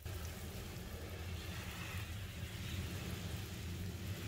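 Water spraying from a garden hose onto potted plants, a steady hiss over a low rumble, starting suddenly at the beginning.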